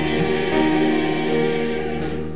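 Church choir of mixed men's and women's voices singing, holding long sustained chords.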